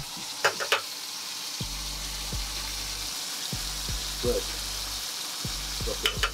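Ribeye steak frying in hot oil in a pan: a steady sizzling hiss, with a few sharp clicks about half a second in.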